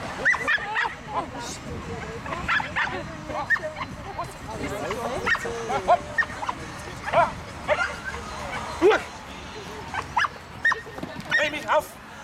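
Small dog barking repeatedly in short, sharp barks, about a dozen, at uneven intervals.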